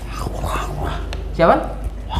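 Wordless vocal sounds from a man in a spirit-possession trance, made through his clasped hands, with a man's voice asking 'Siapa?' about a second and a half in. A steady low hum runs underneath.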